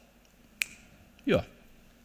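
A quiet pause in a man's talk on a hall's sound system. One sharp click comes about half a second in, and a short spoken 'ja' follows.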